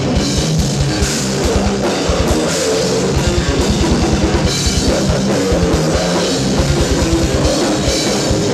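A metal band playing live: a drum kit with fast, even bass-drum strokes under electric guitar and bass guitar.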